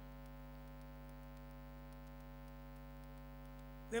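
Steady electrical mains hum: a low, unchanging drone with many evenly spaced overtones, picked up by the lectern microphone's sound system. A man's voice starts again at the very end.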